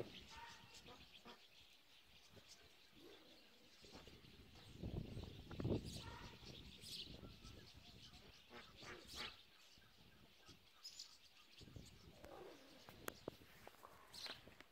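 Near silence outdoors with faint, scattered bird calls and chirps, and a short low noise swelling about five seconds in.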